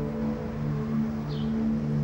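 Soft background score holding sustained low notes.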